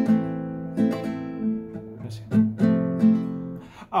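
Nylon-string classical guitar strummed in a short pattern of about seven strokes, starting on an F chord with C in the bass, the chords ringing between strokes.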